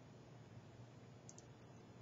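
Near silence with a low room hum, and two faint computer mouse clicks a little past the middle.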